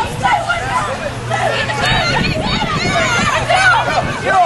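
Several voices shouting and calling over one another at once, with a low steady hum underneath from about a second in until near the end.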